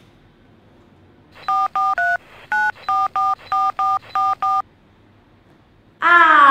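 Telephone keypad tones dialing a number: ten short two-note beeps in quick succession, with a brief pause after the third.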